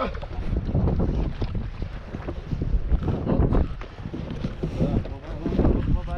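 Wind buffeting the microphone, with water sloshing against the hull of a small fishing boat drifting at sea.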